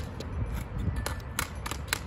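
Irregular sharp clicks and taps of a ball hockey stick blade against a hard plastic ball and the asphalt as the ball is stickhandled, several a second, over a low background rumble.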